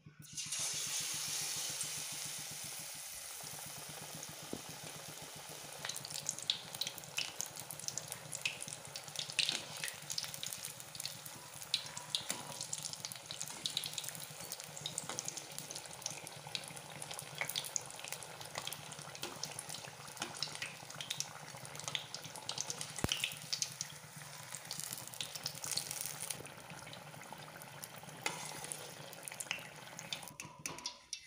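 Batter-coated stuffed green chillies (chilli bhajjis) deep-frying in hot oil: a steady sizzle, loudest in the first couple of seconds, with many small crackles and pops throughout.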